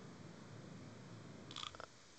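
Very quiet: faint steady background noise on a call's audio, with a brief faint sound about one and a half seconds in.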